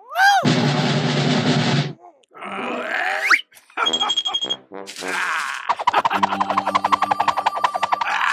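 Cartoon character voices grunting and growling in wordless gibberish, mixed with comic sound effects and background music. A fast, even ticking over held notes fills the last couple of seconds.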